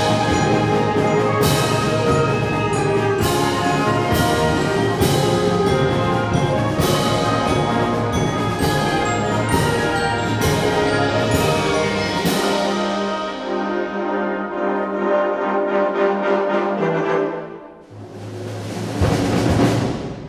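Wind band playing a loud passage, with brass and percussion accents struck about once a second. About twelve seconds in it thins to softer woodwinds, dips briefly, then the full band comes back in loud near the end.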